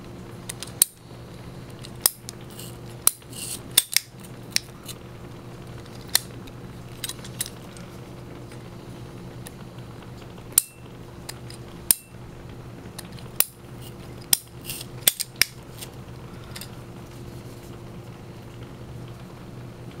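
Hand PVC pipe cutter snipping through the rubber of a halved tennis ball: a series of sharp, irregularly spaced clicks and snaps from the cutter's jaws and ratchet. A steady low hum runs underneath.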